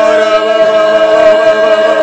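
Prayer in tongues sung aloud, with several voices chanting and singing over one another. One voice holds a long, steady note.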